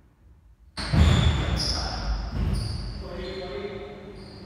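Near silence, then about three-quarters of a second in a sudden loud burst of echoing squash-court noise: ball impacts off the walls and floor ringing in the court, fading over the next seconds, with men's voices near the end.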